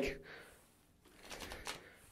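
A deck of playing cards riffled with the thumb, a brief faint patter of card edges about a second and a half in.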